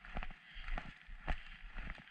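Walking footsteps on a dirt and gravel trail, about two steps a second, with a low rumble underneath.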